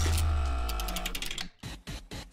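Musical transition sound effect: a deep bass hit with layered sustained tones and a rapid run of mechanical-sounding clicks, fading and cutting off about a second and a half in.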